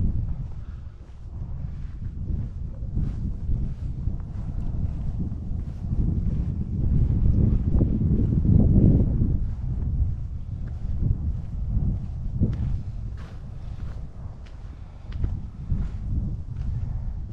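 Wind buffeting the camera microphone in a low rumble that swells strongest about halfway through, with faint footsteps on the paved trail.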